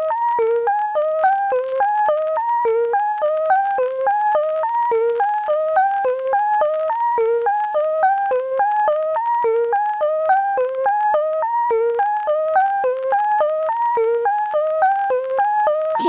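Electro song intro: a lone synthesizer plays a short riff of quick notes, repeated over and over at a steady level. Right at the end the pitch dives down and cuts off.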